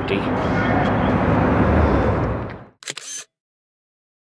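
Steady outdoor road and wind noise that fades out about two and a half seconds in, followed by a brief camera shutter click.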